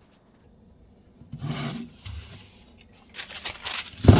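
Quiet handling noise: a short scrape or rustle about a second and a half in, then a scatter of small rustles and clicks near the end.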